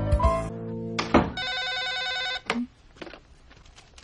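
Music cuts off about half a second in. After a sharp click, a telephone rings for about a second with a warbling electronic tone, followed by a few faint clicks.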